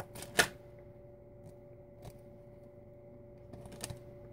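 A deck of tarot cards being shuffled by hand: one sharp snap of the cards about half a second in, a few faint clicks, then a quick run of small clicks near the end.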